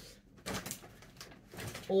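Clothing rustling as a garment is pulled from a pile and handled, a soft irregular rustle lasting about a second, followed by a short spoken "O" at the very end.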